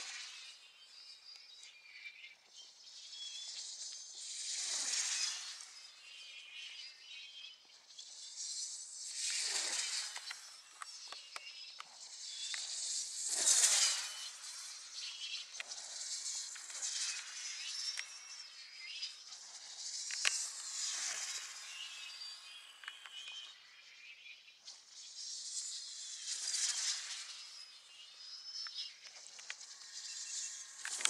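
Dynamic-soaring RC glider whooshing past on repeated high-speed passes: a rising and falling hiss every three to five seconds, the loudest about halfway through.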